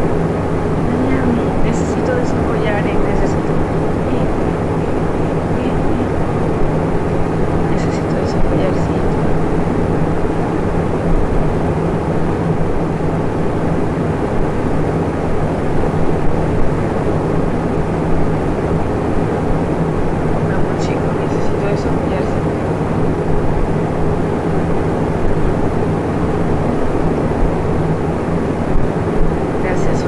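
Steady, loud background noise with a low hum, with a few faint snatches of voice here and there.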